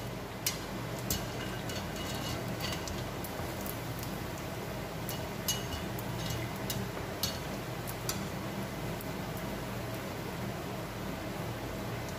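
Neyyappam batter fritter deep-frying in hot oil in a small kadai: a steady sizzle with scattered sharp crackles and pops.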